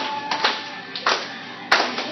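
A group of children clapping and tapping together in a steady rhythm, about one sharp hit every two-thirds of a second, over group singing; a held sung note ends about half a second in.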